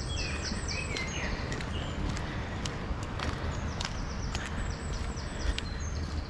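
Songbirds calling in trees: two runs of quick, short falling chirps, one just after the start and one about four to five seconds in, over a steady low rumble. Light footsteps on tarmac sound through.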